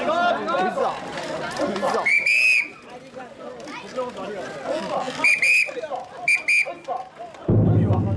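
Crowd chatter, then a whistle blown in short shrill blasts: one longer blast about two seconds in, then two quick pairs of blasts past the middle. A steady low hum starts suddenly just before the end.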